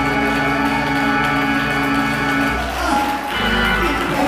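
Church music: a long chord held steady for about two and a half seconds, then the music moves on near the end.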